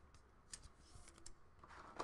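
Near silence: room tone with a few faint, short clicks and a soft rustle near the end, from hands handling an object.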